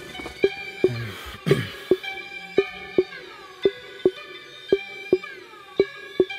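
A hip-hop instrumental beat playing back: a melodic sampled loop whose notes slide down in pitch, over a short sharp drum hit repeating about twice a second.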